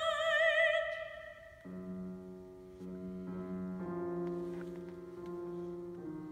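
A soprano holds a high sung note with vibrato, the loudest sound here, which fades out about a second and a half in. A grand piano then plays sustained chords that change every second or so, accompanying the opera aria.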